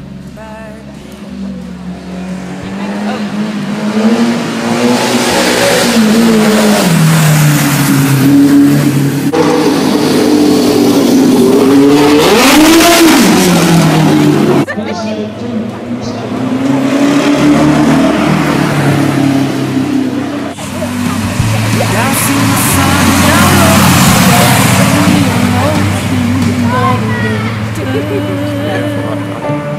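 Classic cars being driven hard past on a street sprint course, engine notes rising and falling through the gears as each one comes by. There are several loud passes, and the sound breaks off abruptly twice.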